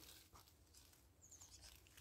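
Near silence: faint background with a few faint ticks in the second half.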